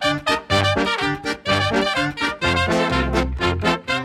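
Swing-style background music led by brass instruments over a bouncing bass, with a steady beat.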